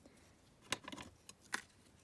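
Faint handling of a grosgrain ribbon and a pair of scissors: soft rustling with two light clicks, one a little under a second in and one about a second and a half in.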